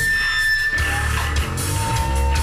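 Heavy rock music with distorted electric guitar and drums.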